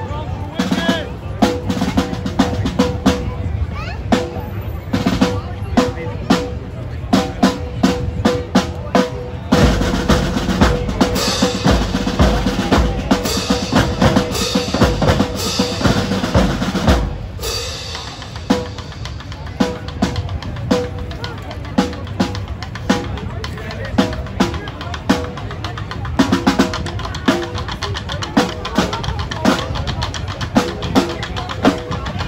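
Marching band drumline of snare drums, tenor drums and a bass drum playing a drum cadence with rapid strokes and rolls. From about ten seconds in until about seventeen seconds the playing is denser and louder, then it drops back to sparser strokes.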